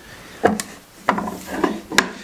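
Bench vise being closed on two sticks of wood that hold a saw blade: a knock about half a second in, then a steady wooden rub with a few sharp clicks as the jaws are drawn tight.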